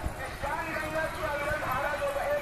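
Voices chanting together in a melody that rises and falls in long, drawn-out phrases, over a low street rumble.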